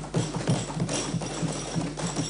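Members of parliament thumping their wooden desks in approval: a rapid, irregular patter of many knocks.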